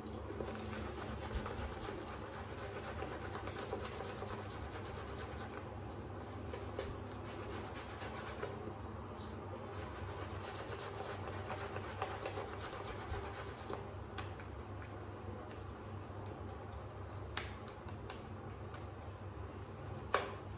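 Synthetic shaving brush being worked over a lathered face, a steady wet swishing of bristles through shaving soap lather with many small crackling clicks throughout.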